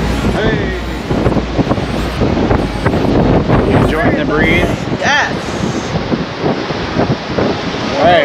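Wind buffeting the camera microphone, a fluctuating rumble that eases after about five seconds, with brief bits of voice breaking through.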